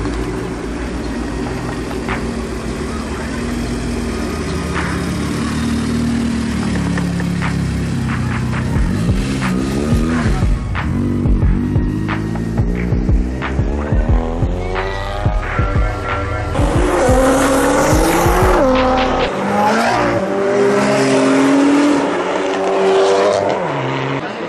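Sports car engines revving and accelerating hard as several cars pull away one after another, the pitch climbing and dropping through each pull and gear change, with scattered sharp pops.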